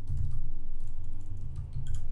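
Typing on a computer keyboard: a few light keystrokes and a press of Enter, over a low steady hum.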